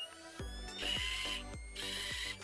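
Logo intro sting: rising electronic tones under a quick run of mechanical ratchet-like ticks, about five a second, with two short bursts of hiss.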